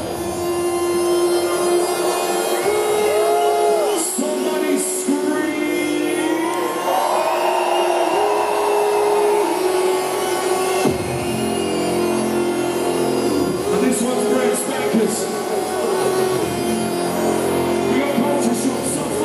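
Drum and bass DJ set played loud over a hall PA: an intro of held synth tones and gliding notes without a strong beat. Deep bass notes come in about eleven seconds in.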